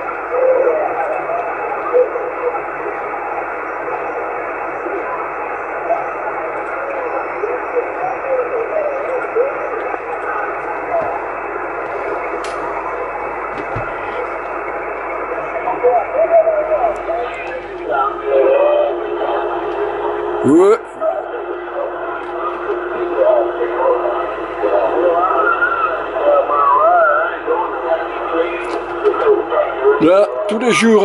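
Yaesu FT-450 transceiver receiving the 11 m CB band on sideband: a steady band of static hiss with faint, garbled distant voices coming and going in it. About two-thirds of the way through, a short rising whistle cuts across the noise.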